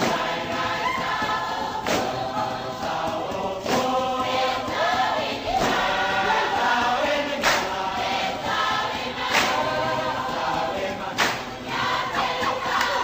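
Group singing of a Samoan dance song, several voices in harmony, with a sharp percussive hit about every two seconds keeping the beat.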